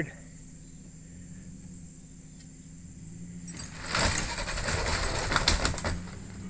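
A vehicle jerks forward on a heavy chain hooked to an old wooden house. About three and a half seconds in, a loud burst of crackling, scraping and clattering noise starts and lasts about two seconds.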